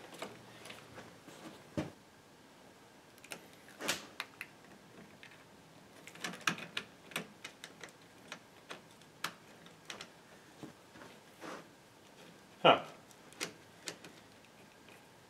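Scattered small clicks and knocks of a snowmobile battery being pressed into its tight tray and its terminal leads handled, then a screwdriver working a terminal bolt, with a cluster of taps about six to seven seconds in and a short "huh" near the end.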